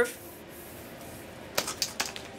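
Two light, sharp clicks about a second and a half in from plastic flex tubing being handled and set down, over a low steady room hiss.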